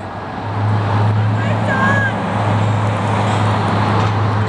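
Road traffic noise with a steady low engine hum that sets in about half a second in.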